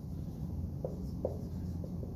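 Dry-erase marker writing on a whiteboard: a few short squeaky strokes as letters are written, about a second in and again near the end, over a steady low hum.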